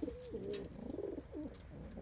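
Domestic pigeons cooing: low, warbling coos that waver in pitch and run on almost without a break.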